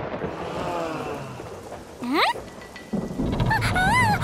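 Heavy rain sound effect, a steady hiss that starts suddenly, with a single short rising tone about two seconds in and a low rumble of thunder swelling about three seconds in.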